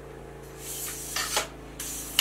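Aluminium leg sections of a Vanguard Alta-Pro 263AT tripod sliding out of each other with a hissing rub, two light clicks about a second in, then more sliding near the end.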